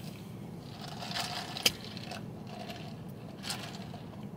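Quiet pause with faint handling of a plastic iced-drink cup: a few light clicks and taps, the sharpest about a second and a half in.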